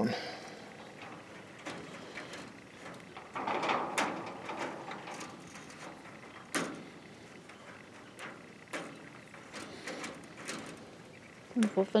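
Chicken wire mesh being handled while a small metal fence clip is fitted by hand to join two pieces: scattered sharp clicks of wire on metal, the loudest about six and a half seconds in, with a longer rustle around four seconds in.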